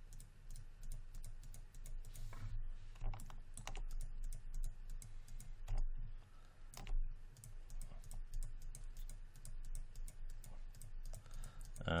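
Irregular clicks and taps from a computer mouse and keyboard, as a Paint Effects brush is clicked and dragged and the B key is pressed, over a low steady hum.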